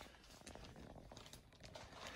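Near silence, with a few faint crinkles from plastic sheeting being handled.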